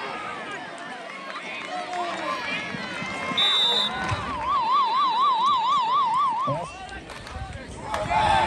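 Football crowd shouting and cheering from the stands. About three and a half seconds in there is a short shrill whistle, then a warbling siren-like tone rising and falling about four times a second for some two seconds.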